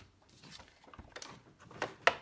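Faint handling noises of craft supplies on a tabletop: a few light clicks and a soft knock about a second in.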